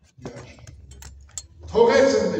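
A man's voice in a religious talk: a few short, light clicks in the first half, then loud speech beginning near the end.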